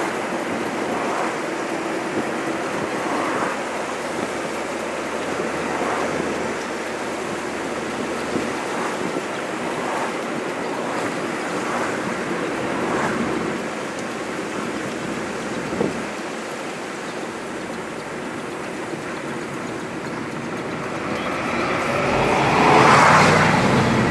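Steady rush of wind and tyre noise in an open-top convertible driving at road speed. Near the end it swells louder as oncoming traffic, including a bus, passes close by.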